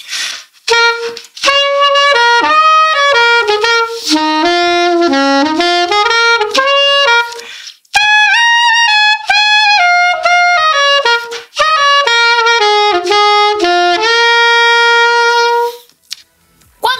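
Soprano saxophone playing short improvised lines on the C Dorian scale, built from the C minor triad and C minor seventh chord. It plays two phrases of quick separate notes with a brief break between them, and the second phrase ends on a long held note.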